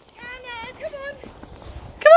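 Faint high-pitched calls, rising and falling, in the first half, over soft footsteps in snow.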